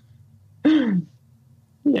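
A person's brief voiced sound, a little under half a second long and falling in pitch, about two-thirds of a second in, followed by a spoken "yeah" at the end.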